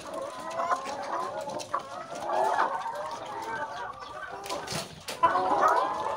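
A house of caged laying hens clucking, many short calls overlapping, with a few sharp clicks about four and a half seconds in.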